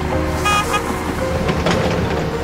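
Street traffic with a short double toot of a car horn about half a second in, followed by a few knocks, over background music.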